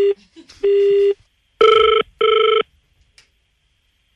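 Telephone line tones heard by the caller: two short steady beeps, then, about one and a half seconds in, a buzzing double-ring ringback tone (two short rings in quick succession), the sign that the called phone is ringing.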